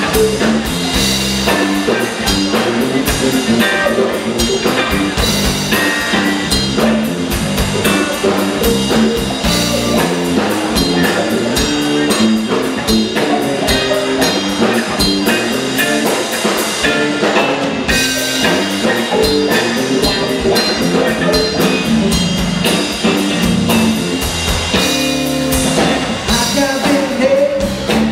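Live blues trio playing a slow blues: electric guitar, electric bass and drum kit, loud and continuous, heard through the PA.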